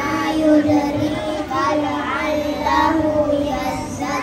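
A group of young children singing together in unison, one of them into a handheld microphone, with long held notes.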